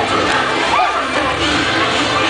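Parade crowd noise: many spectators' voices with one or two shouts about a second in, and parade music low underneath.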